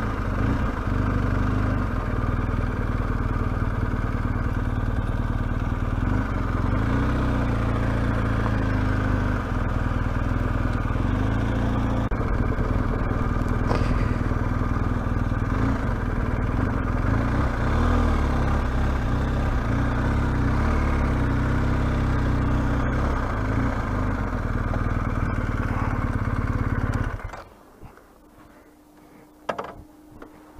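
Motorcycle engine running steadily at low speed as the bike rolls slowly over cobblestones, heard from the rider's position, then cut off abruptly near the end, leaving a faint steady tone and a few small clicks.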